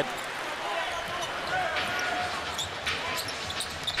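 Basketball arena ambience: a steady crowd murmur, with a basketball being dribbled on the hardwood court.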